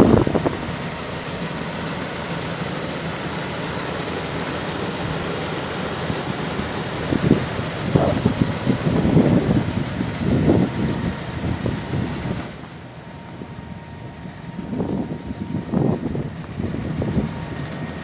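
Pickup truck's 3.9 L V6 gas engine idling, with uneven gusts of wind on the microphone over it. About twelve seconds in the sound turns quieter and duller for a few seconds.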